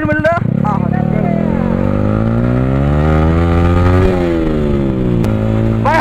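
Yamaha R15's single-cylinder engine revving up under acceleration, its pitch climbing steadily for about four seconds, then falling away and running at a steady pitch near the end.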